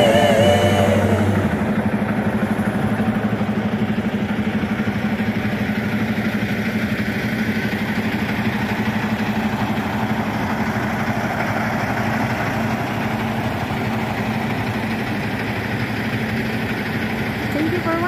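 A semi-truck's diesel engine idling steadily, an even, fast throb with a low hum. A song with singing fades out in the first second or two.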